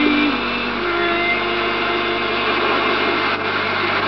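A steady, loud, noisy drone like a running engine, over a low steady hum. A held sung note ends in the first moments.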